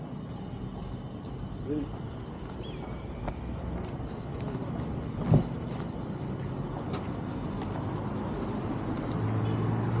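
Roadside traffic noise, steady and slowly growing louder as a car approaches near the end. A short knock comes about five seconds in.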